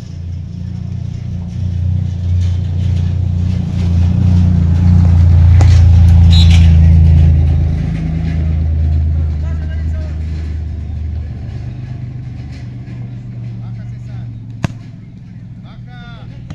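A motor vehicle's engine drones as it passes close by, growing louder to a peak about five to seven seconds in and fading away by about eleven seconds. A single sharp knock comes near the end.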